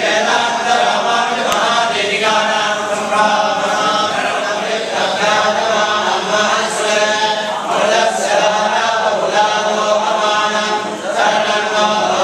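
Men's voices chanting a Hindu hymn or mantra together in a steady, continuous recitation.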